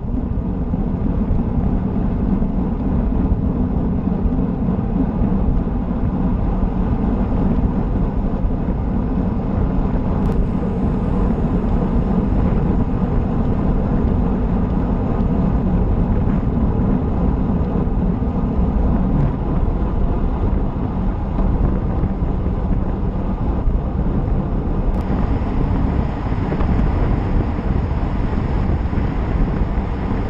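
Wind rushing over an action camera's microphone on a road bike riding at about 30 mph, a steady, heavy roar. It turns hissier about 25 seconds in.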